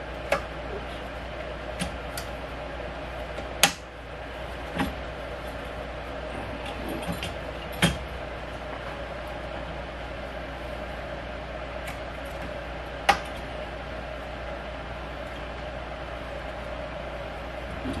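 Scattered clicks and knocks of hardware being fitted to the handle of an Earthway push seeder, three of them louder and a few seconds apart, over a steady background hum.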